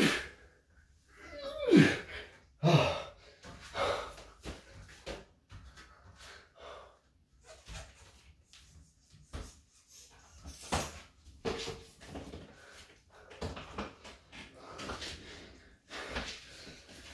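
A man straining through the last pull-ups of a set, two loud grunts falling in pitch in the first few seconds. Hard, heavy breathing in short breaths follows as he recovers.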